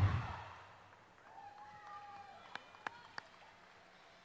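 Routine music ending and ringing out briefly in the arena, then faint distant yells and calls from the crowd, with three sharp clicks close together near the three-second mark.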